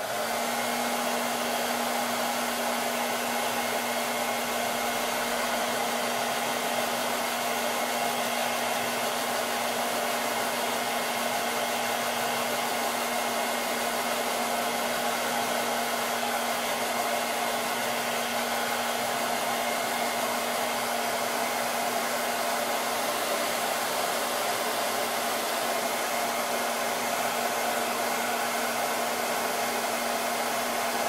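Handheld blow dryer switched on and running steadily on one speed, a constant rush of air over a fixed motor hum, drying freshly applied paste.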